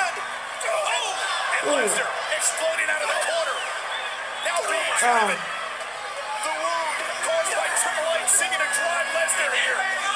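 Wrestling broadcast audio: an arena crowd yelling and whooping, mixed with voices.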